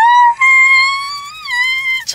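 A woman's high-pitched squeal of delight, held as one long note that slides up at the start, wavers briefly about one and a half seconds in, then settles.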